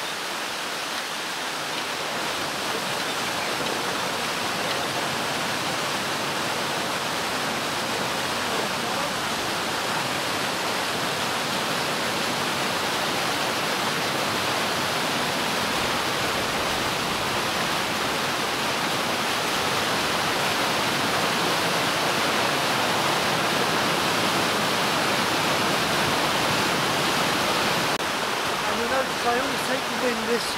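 Water gushing through the open paddles of a canal lock gate into the lock chamber as the lock fills: a steady rushing that slowly grows louder.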